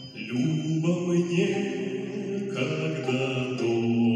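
A man singing a slow folk melody into a microphone, in long held notes over a steady low drone.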